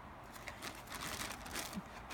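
Plastic bags and fabric crinkling and rustling as they are handled, a run of soft, irregular crackles.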